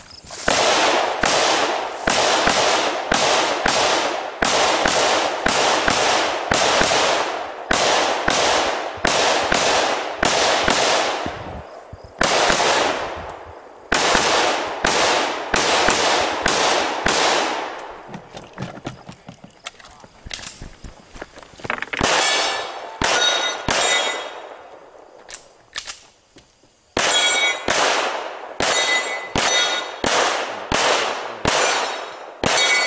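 Semi-automatic AR-style rifle fired in quick strings at about two shots a second, each shot followed by a short echo. Past the middle the shots grow quieter for a few seconds, then come back loud, some of them followed by thin metallic pings from steel targets being hit.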